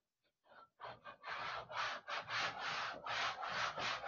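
Rustling, rubbing noise close to the microphone in quick repeated strokes, several a second, starting about a second in.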